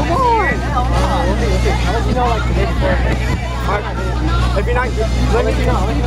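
Crowd chatter: many voices talking over one another, with a steady low rumble underneath.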